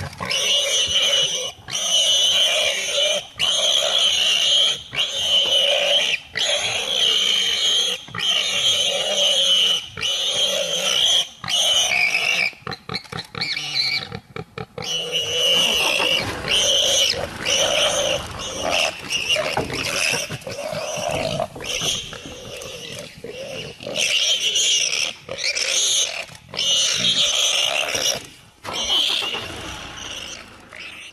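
Warthog squealing in distress as a leopard holds it: loud, high-pitched squeals about a second each, over and over with short gaps. About halfway through they break into a run of rapid short cries before the long squeals return.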